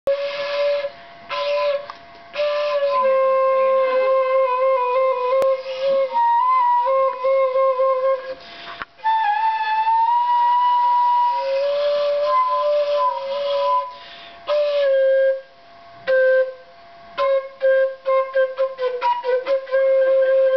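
End-blown wooden flute playing a slow tune of held notes that step between a few pitches, with short breaks between phrases. Near the end it plays a quick run of short, separate notes.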